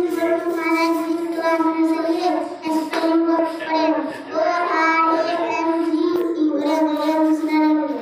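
A young boy singing into a handheld microphone, holding long steady notes in several phrases.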